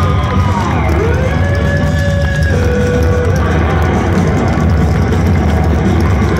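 A hard rock band playing live and loud, heard from inside the audience, with a heavy, blurred low end. In the first half a lead line holds long notes that bend up and down in pitch.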